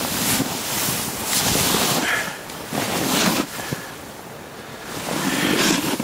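Wind buffeting a handheld camera's microphone: a rushing noise that swells and fades in gusts about four times.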